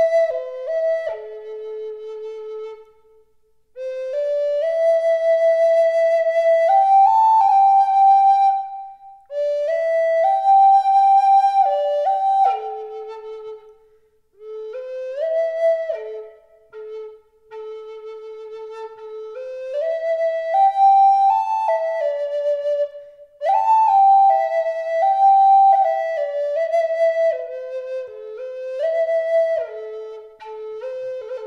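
Wooden Native American-style flute played solo: a slow melody of long held notes stepping up and down, in phrases broken by short pauses for breath.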